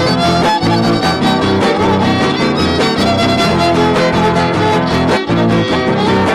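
A trio huasteco playing a son huasteco: the violin leads over the steady rhythmic strumming of a jarana huasteca and a huapanguera.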